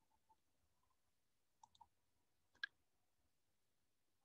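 Near silence with a few faint computer-mouse clicks: two light ones about one and a half seconds in and a sharper one a second later.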